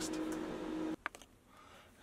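Steady low background hum with light hiss that cuts off abruptly about a second in, followed by a couple of faint clicks and then near silence.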